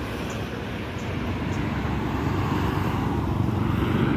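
Highway traffic: tyre and engine noise of passing vehicles, steadily growing louder as a car approaches.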